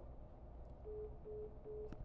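Smartphone speaker sounding the short, steady beeps of a call-ended tone, about two and a half beeps a second, starting about a second in: the caller has hung up.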